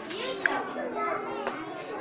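Many young children's voices overlapping in a busy hubbub of chatter and calls, with no single clear speaker.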